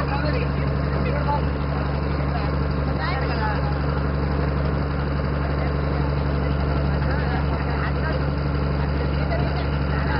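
Steady low drone of a boat's motor, with several people talking at once over it.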